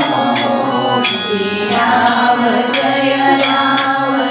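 Devotional Ram-name chant sung to a melody, with sharp metallic cymbal strikes keeping a steady beat of roughly two a second, often in pairs.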